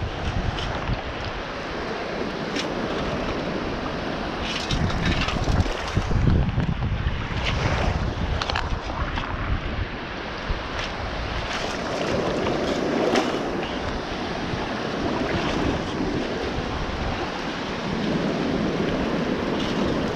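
Wind buffeting the camera microphone over the wash of choppy shallow bay water. Short splashes come every few seconds as legs wade and the scoop moves through the water.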